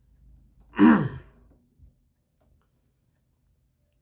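A man's voiced sigh: one short exhale with a falling pitch about a second in, after a faint rustle.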